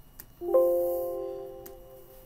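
Computer alert chime: one bell-like tone of several pitches starting about half a second in and fading over about a second and a half, with a few faint mouse clicks around it.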